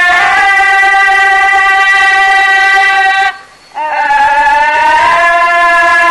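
A solo female voice singing a Thai classical song in long held notes: one steady sustained note, a short break for breath a little past halfway, then a new note that slides slightly upward.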